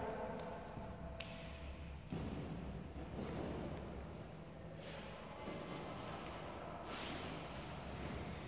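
Quiet shuffling and a few soft knocks of a barefoot girl moving across a gym floor and down onto a foam gym mat, over a steady low hum of the hall.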